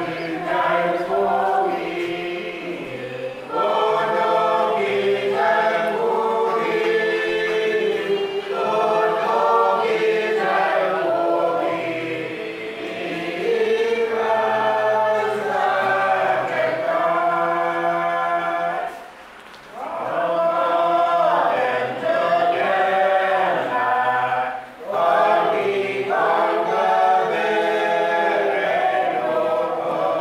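A church congregation singing a hymn together, in phrases broken by short pauses for breath, the longest about two-thirds of the way through.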